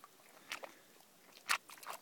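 German Shorthaired Pointer digging at the slush and ice in an ice-fishing hole: a few short crunching scrapes, the loudest about one and a half seconds in.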